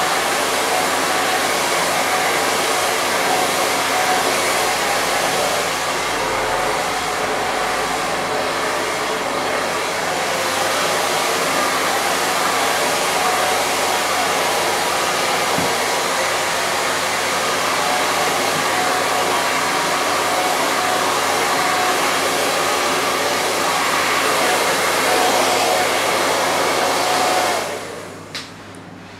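Handheld hair dryer blowing steadily, switched off near the end.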